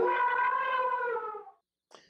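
The long held final note of a 1970s TV commercial jingle, sagging slightly in pitch and fading out about one and a half seconds in, followed by a short silence.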